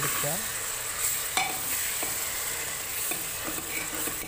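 Tomatoes, green chillies and onions sizzling in hot oil in a pressure cooker pot while a metal spoon stirs them, a steady hiss with a couple of sharp knocks of the spoon against the pot.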